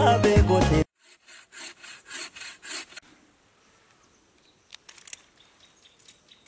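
Background music that cuts off under a second in, then a bow saw cutting a thin wooden pole, about two rasping strokes a second for about two seconds. A few sharp clicks near the end.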